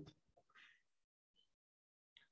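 Near silence: the call audio is gated almost to nothing between sentences, leaving only a very faint, brief trace of sound.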